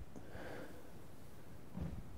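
Quiet church room tone with a faint exhale about half a second in, then a brief soft thump near the end as a man sits down onto a wooden pew.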